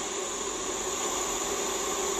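Steady background room noise: an even hiss with a faint low hum underneath, unchanging throughout.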